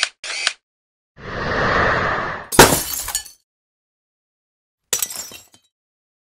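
Logo-animation sound effects: two quick swishes, then a swelling whoosh that ends in a sharp glass-shattering crash with a ringing tail about two and a half seconds in, the loudest moment. A shorter crash follows near the end.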